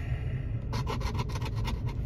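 A coin scratching the coating off a scratch-off lottery ticket in rapid scraping strokes, starting about two-thirds of a second in.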